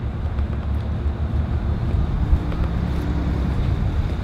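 Wind buffeting a handheld camera's microphone: a steady low rumble, with a faint steady hum joining for about a second past the middle.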